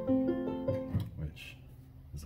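Electronic home keyboard played with both hands: a few notes struck over a held lower note, stopping about a second in.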